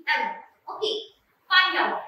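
Speech: a voice in three short phrases with brief silent gaps between them, the words not made out.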